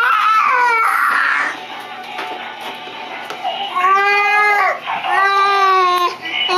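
A young child's voice in loud, drawn-out wailing notes: one falling cry at the start, then two long held notes about four and five seconds in.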